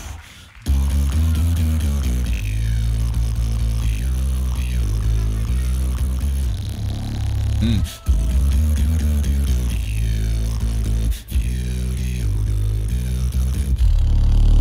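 Competition beatboxing into a handheld microphone: deep, sustained bass notes stepping from pitch to pitch under layered vocal sounds. It starts after a brief silence, with short breaks about eight and eleven seconds in.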